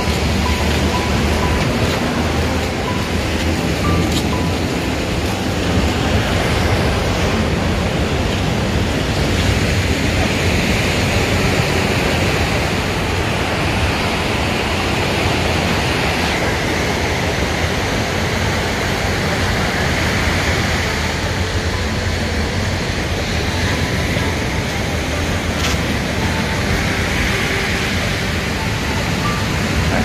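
Large ocean surf breaking, heard as a steady, continuous wash of waves.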